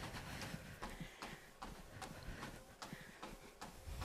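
Faint, even footfalls of a runner jogging on a treadmill belt at a light recovery pace, about two and a half steps a second.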